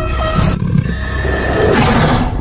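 Tense horror-film score: sustained, droning tones under a low rumble, with two loud, noisy swells, about half a second in and again near the end.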